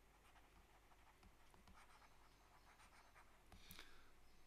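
Near silence with faint ticks and scratches of a stylus writing on a tablet, a little louder about three and a half seconds in.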